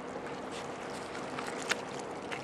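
Steady low hum of a 1,000-foot lake freighter heard across the harbor water, under a soft wash of noise. A few sharp clicks sit on top, the loudest about three-quarters of the way through.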